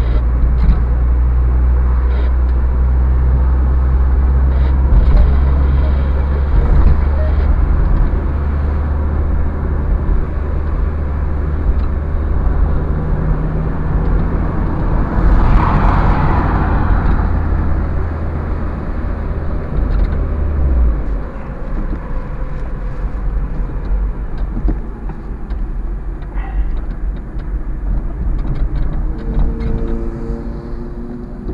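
Steady engine drone and road noise heard inside a moving car. A louder rushing swell rises and falls about halfway through, and the low engine drone drops off about two-thirds of the way through.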